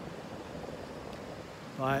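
Small ocean waves breaking and washing up the beach: a steady rushing hiss of surf.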